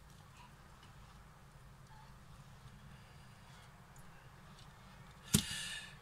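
Near quiet with a faint steady low hum, broken about five seconds in by a single sharp tap or knock.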